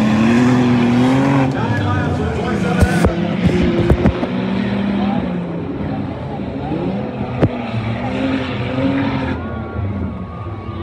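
Several small figure-8 race cars' engines running and revving, their pitch rising and falling as they go round the track, with a few sharp knocks about three to four seconds in and again past seven seconds.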